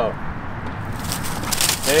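Dry fallen leaves crunching and rustling underfoot, with a burst of crackling about a second and a half in; a man's voice comes in at the very end.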